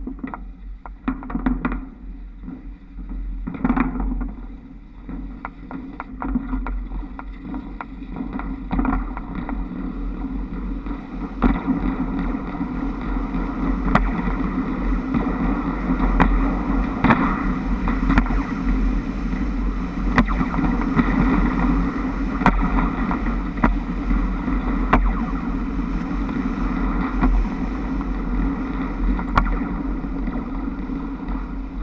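Trolleybus running under overhead wires, heard from the roof: a steady rumble of travel and wind on the microphone, with many sharp clicks and knocks as the trolley pole shoes slide along the wires and over their hangers. The sound grows louder about a third of the way in as the bus picks up speed.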